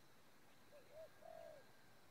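Spotted dove cooing faintly: three coos a little under a second in, two short and one longer, arched in pitch.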